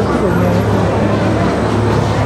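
Street ambience: voices of people talking, without clear words, over a steady low hum.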